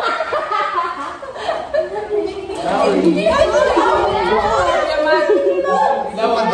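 Several people laughing and chattering at once, their voices overlapping in a large, echoing room, with a brief low rumble near the middle.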